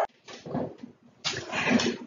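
A pet dog barking, two bark bursts, the second louder.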